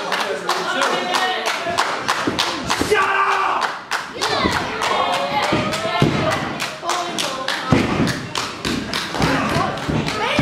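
Rapid repeated thuds, several a second, with shouting voices over them, from a live wrestling bout and its crowd.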